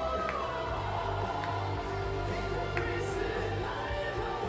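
A singer holding long notes into a microphone over live band backing, with a steady bass line and a few sharp drum or cymbal hits.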